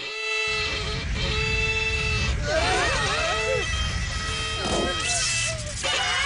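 A violin played badly in a cartoon soundtrack: a harsh, grating held tone with a rough low buzz under it. From about two and a half seconds in, wavering cries of pain break in over it.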